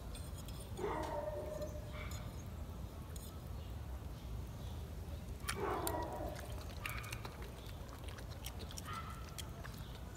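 A Boston terrier giving two short whines while begging for food, one about a second in and another midway that falls in pitch.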